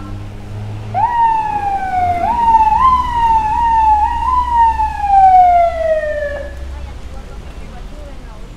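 Police truck siren starting about a second in: the tone jumps up several times in short whoops, each sliding back down, then ends in one long falling wail that dies away after about six and a half seconds, over a low rumble.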